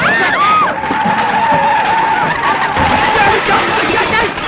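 Film sound effects of a crash: shouting voices, then a long steady screech like skidding tyres lasting nearly three seconds, over a loud dense clatter, as a street cart stacked with aluminium pots and vessels is knocked over.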